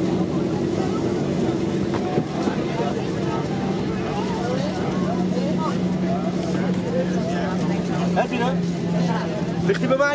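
Cabin noise of a Boeing 737-800 taxiing, heard inside the cabin over the wing: its CFM56-7B engines at taxi idle give a steady low hum over an even rushing noise. Passengers are talking faintly in the background.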